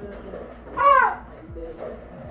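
A short, high-pitched vocal shout about a second in, its pitch rising and then falling.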